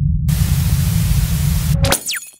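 Intro sound effect: a loud, deep rumbling bass with a burst of TV-static hiss laid over it, starting a moment in and cutting off abruptly near the end.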